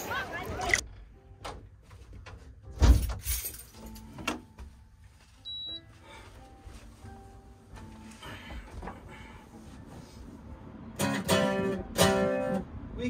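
Knocks and one heavy thump about three seconds in, a short high beep, faint scattered notes, then an acoustic guitar strummed starting about a second before the end.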